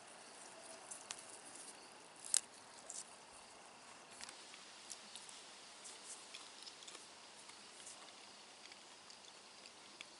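Faint hiss with scattered small clicks and ticks, the sharpest about two and a half seconds in.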